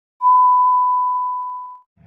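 Television colour-bars test tone: a single steady, high, pure beep lasting about a second and a half, fading out near the end.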